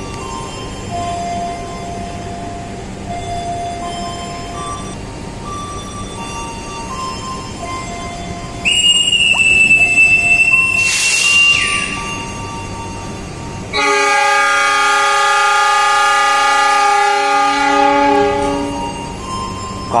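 A whistle blows one long, steady, high-pitched blast lasting about three seconds, the departure signal to the train crew. About two seconds later a locomotive horn sounds one steady chord of several tones for about four and a half seconds, answering that the train is ready to leave.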